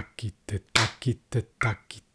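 Konnakol syllables 'ta ki te' spoken in a quick, even rhythm by a man, with a hand clap on every fifth syllable, about every second and a half, laying three over five.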